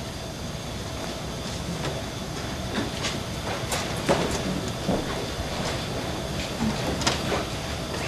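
Footsteps and small knocks from actors moving about a theatre stage, about a dozen at irregular spacing, over a steady hiss and hum of the recording.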